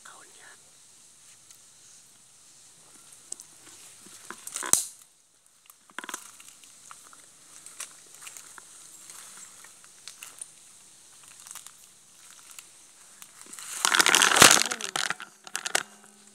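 Footsteps crunching through dry leaf litter, with rustling and scraping from the hand-held camera being moved. There is a sharp knock about five seconds in and a loud scraping burst near the end.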